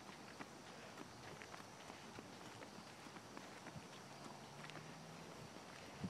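Faint, irregular footsteps on a concrete sidewalk: a toddler's small shoes, and likely the steps of the person following her.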